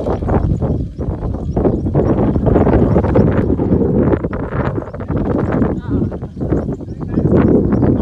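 The single-cylinder diesel engine of a Kubota two-wheel walking tractor chugging steadily with a rapid rhythmic knock as it pulls a trailer under load.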